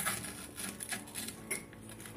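Light clicks and rustling as soap flowers on wooden skewers are handled and pushed into a small plaster pot, with a few sharp ticks about a second in and again shortly after.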